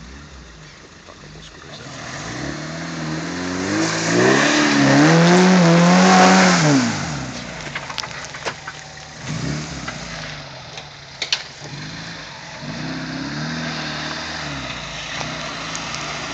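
Suzuki SJ-series 4x4's engine revving up and down as it drives through mud, growing louder and loudest a few seconds in before the revs drop away. A few sharp knocks follow, then the engine runs again at lower revs.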